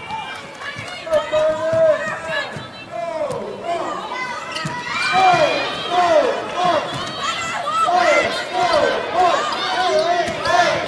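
Basketball shoes squeaking on a hardwood court: many short squeals that rise and fall in pitch, coming thicker from about halfway through, over the murmur of the arena crowd.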